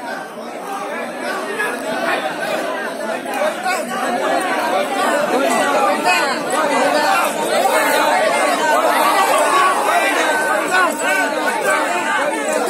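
Crowd of many people talking and calling out at once, a dense chatter that grows louder over the first few seconds and then holds.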